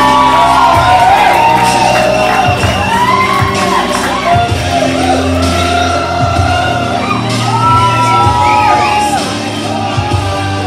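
A song playing over a venue's sound system, with audience members whooping and shouting over the music.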